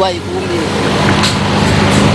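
A motor vehicle going past, its engine and road noise a steady hum that grows gradually louder over about a second and a half.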